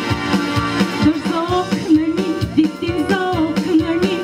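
A woman singing a song into a microphone over backing music with a steady drum beat.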